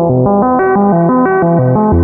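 Critter & Guitari Pocket Piano MIDI synthesizer playing an arpeggiator pattern: a fast, even run of stepped notes over a moving bass line, with lots of reverb.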